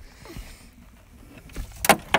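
Low rustling and handling on the boat, then a sharp plastic knock near the end as the cooler lid is swung open.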